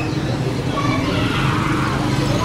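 Busy street ambience: steady low traffic rumble from passing motorcycles and cars, with faint voices of passers-by.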